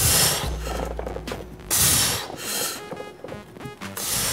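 Forceful, noisy breaths of a lifter straining through a heavy bench-press rep, three or four hard gusts, the loudest at the start and about two seconds in, over background music with a low bass line.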